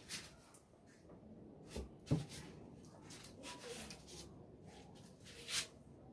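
Faint handling sounds of cloth and a tape measure on a cutting table: a few brief rustles and light knocks, the loudest about two seconds in and another near the end.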